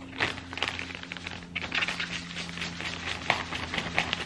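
Salt shaken from a flip-top shaker into a plastic zip-top bag of potatoes: a dense patter of rapid small ticks, grains and shaker rattling against the plastic, with a sharper click near the end.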